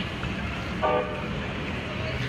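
Street noise of a marching crowd over a steady low rumble, with one short horn toot about a second in.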